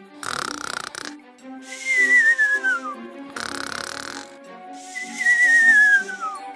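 Cartoon snoring sound effect: a rasping snore on the in-breath, then a whistle falling in pitch on the out-breath, heard twice over light background music.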